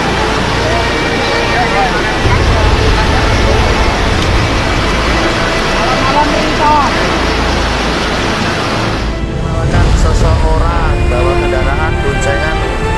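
Brown floodwater rushing in a dense, steady noise, with people's voices calling faintly through it, under a music track with long held tones. About nine seconds in the water noise drops away and the voices come forward.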